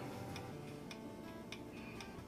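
Quiet film score: faint sustained tones with a soft tick about twice a second, like a clock.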